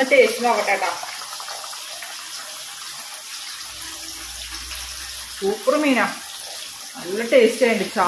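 A woman's voice speaks a few short phrases, near the start, about two-thirds through and at the end, over a steady background hiss.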